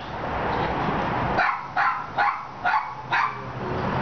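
A dog barking five times in short, sharp barks about half a second apart.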